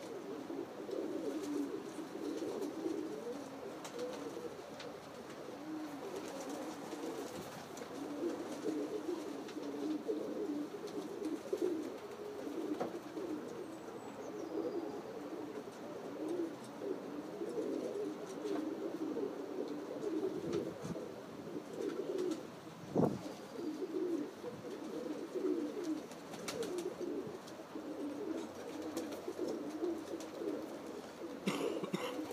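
Several pigeons cooing, their coos overlapping without pause. There is one sharp knock about three quarters of the way through.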